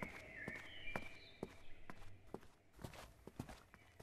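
Faint footsteps: a string of light steps on the ground, about two a second, thinning out toward the end.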